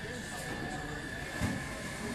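Coffee shop ambience: indistinct chatter of patrons over a steady background rumble and a constant high tone, with a low thump about one and a half seconds in.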